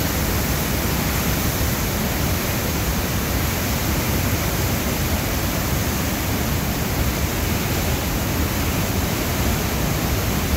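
Floodwater pouring from a dam spillway and churning downstream: a loud, steady, unbroken rush of water.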